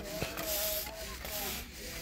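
Broom sweeping a paved path, its bristles scraping in repeated strokes.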